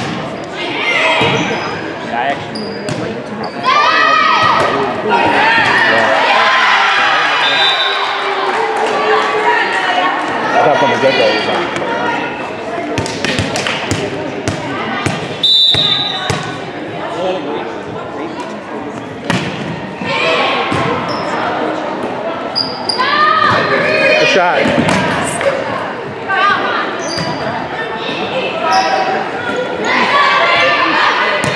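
Indoor volleyball rallies in a reverberant gym: the ball is struck and bounces on the hardwood, and players and spectators shout and call out throughout. A short high whistle sounds about halfway through, as play stops between points.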